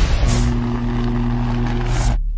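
Intro logo sound effect: a whoosh about a quarter second in, then a low steady drone of a few held tones, and a second whoosh near the end.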